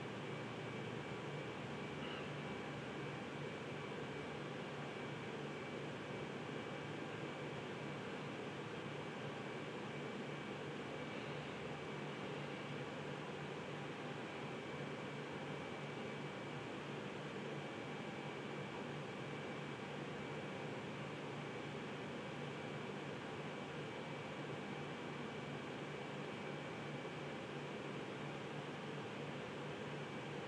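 Steady background room noise: an even hiss with a faint, thin high tone running through it, like a fan or air conditioner.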